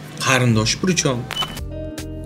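A voice talking over soft background music. Near the end the talk stops and the music's held notes are heard on their own.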